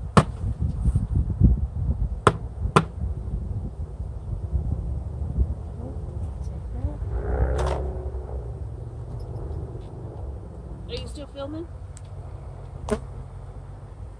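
Wind rumbling on the microphone, gusty for the first couple of seconds and steadier after, with four sharp clicks or knocks spread through it.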